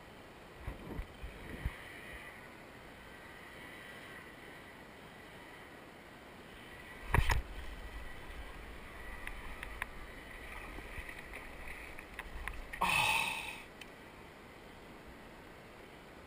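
Paddling a plastic Hobie fishing kayak: paddle strokes dipping and swishing in the water, with a few soft knocks about a second in, a sharp knock against the hull midway, and a louder rush of water near the end.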